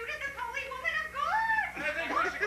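A person's high-pitched wailing cries, the pitch sliding up and down, with a long rising wail about a second and a half in.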